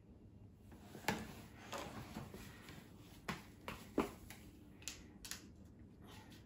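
Small plastic toy plates and cups being handled: faint, scattered light clicks and taps, about half a dozen spread over a few seconds.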